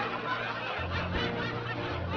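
Snickering and chuckling laughter over background music.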